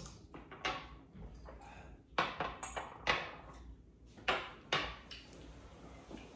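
A handful of short, sharp knocks and clinks of small glasses being set down on a table after a round of tequila shots, about six in all, spread over several seconds.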